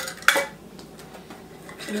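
Two quick, sharp clinks of a glass pint mason jar against metal kitchenware, about a third of a second apart, the second louder.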